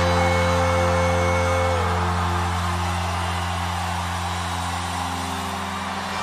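Band music holding a sustained final chord that slowly fades, with a high held note that stops about two seconds in: the ring-out at the end of a song, with no beat under it.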